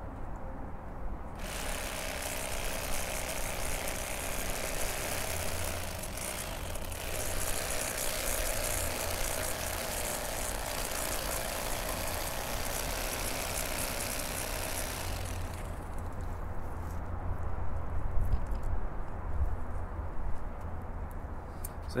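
Bubba Blade electric fillet knife running, its motor driving the reciprocating blades as they saw along the backbone of a crappie. The sound turns fuller and brighter from about a second in until about two-thirds of the way through, while the blades are cutting, then drops back to the steady lower drone of the motor.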